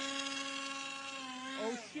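RC model airplane's motor and propeller running at a steady high whine just after a hand launch, then dropping in pitch and cutting off near the end as the plane comes down.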